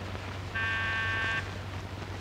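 Electric doorbell buzzer pressed once: a steady, even buzz lasting just under a second, over the constant low hum of an old film soundtrack.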